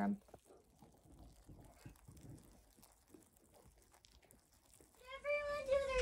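Mealworms moving over a cardboard egg carton and carrot pieces: faint, scattered tiny clicks and rustles during the first three seconds, then almost nothing.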